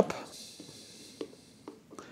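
Faint handling noise: a couple of small, sharp clicks as the hose fitting of a radiator-cap pressure tester is pushed onto the cap adapter, over quiet room hiss.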